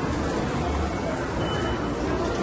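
Steady din of an amusement arcade, a dense wash of machine noise with a low rumble, and a short high electronic tone about one and a half seconds in.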